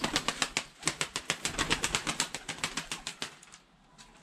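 A white Turkish tumbler pigeon, tossed into the air, takes off with rapid wing claps, about nine a second. They die away after about three and a half seconds as the bird flies off.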